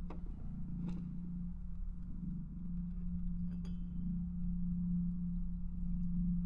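A low steady drone, with a faint tap about a second in and a single light, ringing clink of tableware about halfway through.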